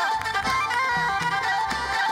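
Arabic traditional music played live by a band: a stepping melody line over steady strokes of a large frame drum beaten with a stick.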